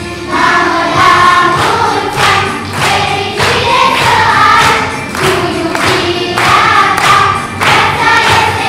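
Children's school choir singing together, conducted, in phrases of a second or two each; the singing swells louder just after the start.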